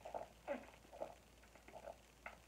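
A person gulping water from a plastic drinking bottle: a run of soft swallows about twice a second.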